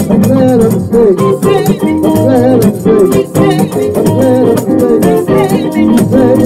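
A gospel song: a headed tambourine beaten by hand in a quick, steady rhythm, its jingles rattling, with a singing voice and held instrumental tones underneath.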